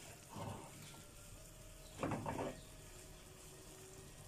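Wooden spoon stirring and turning mashed potatoes in a nonstick frying pan: two brief scrapes, a small one about half a second in and a louder one about two seconds in, over a faint steady background.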